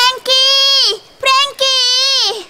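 A high, child-like voice singing four held notes on nearly one pitch, short, long, short, long, each dipping at its end.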